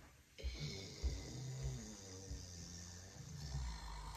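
A woman making a drawn-out breathy, rasping vocal noise through pursed lips, starting suddenly about half a second in.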